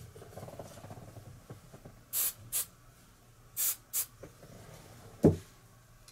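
Aerosol hairspray can spraying four short hisses in two quick pairs, then a single thump near the end.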